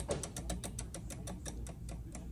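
Spinning prize wheel ticking as its pointer flaps over the pegs, the clicks spacing out steadily as the wheel slows down.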